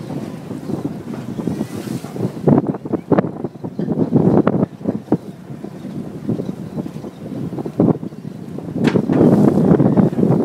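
Wind buffeting the microphone on the open deck of a boat at sea, coming and going in gusts that are loudest near the end, over the wash of the water.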